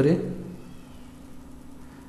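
A man's drawn-out spoken word trailing off at the start, then a faint steady hum with a low tone.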